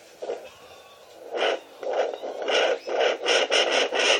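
A fetal heartbeat through a handheld fetal Doppler's speaker: fast, even pulses of whooshing noise, several a second, starting about a second in once the probe is on the belly.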